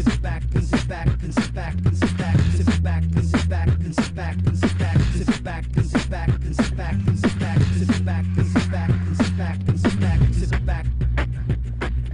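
Live-looped beatbox track: layered vocal percussion keeps a steady beat over a deep sustained bass line whose notes shift every couple of seconds, with scratch-like vocal glides on top.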